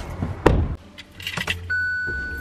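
Keys jangling and clicks and knocks of a car door and seat as someone gets into a car's driver's seat, with a heavy thump about half a second in. A steady high tone starts near the end.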